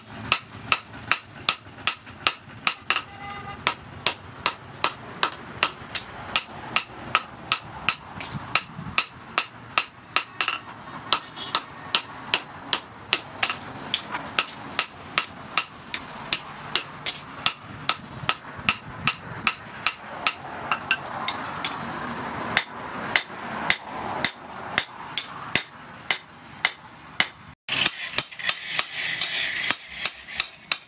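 Hand hammer forging a piece of hot tractor disc plough steel on a small post anvil: a steady run of sharp metal-on-metal blows, about three a second. Near the end there is a brief break, then the blows come louder.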